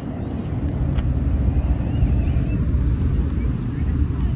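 Wind buffeting the microphone: a low, uneven rumble that grows louder about a second in.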